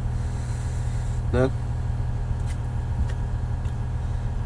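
Caterpillar 980M wheel loader's diesel engine running steadily, a low even hum heard from inside the cab.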